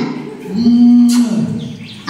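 A person's voice holding one low drawn-out note, like a long "mmm" or "ooh", for most of a second, then sliding down and fading. A short sharp noise comes about a second in.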